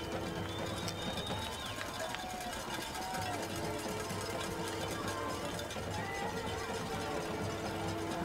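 Stadium ambience at a high-school football game: faint crowd voices with faint music carrying from the stands, held notes and all, steady with no sharp sounds.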